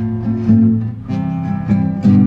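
Acoustic guitar strummed in a short instrumental break between sung lines of a live folk song.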